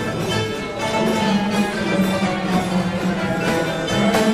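Live band playing an instrumental passage, with sustained held notes and no singing.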